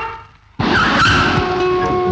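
A man's word trails off, then about half a second in a sudden loud rush of noise breaks in. It thins out as sustained music notes come up under it and carry on.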